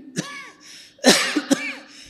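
A man clearing his throat and coughing: a short throaty sound just after the start, then two loud sharp coughs about a second in, half a second apart.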